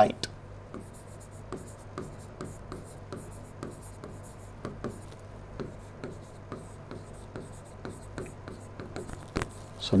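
Stylus tapping and sliding on a digital board's screen as words are handwritten: a string of small, irregular taps and short scratches, soft against the room.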